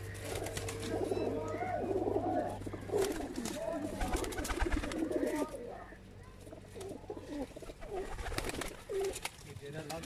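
A loft of domestic pigeons cooing, many calls overlapping, busiest in the first half and thinning out after about five and a half seconds.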